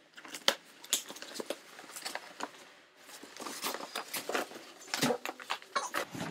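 Scissors cutting open a cardboard shipping box: a run of short snips and scrapes, a brief lull about halfway, then rustling and tearing as the box is opened and handled.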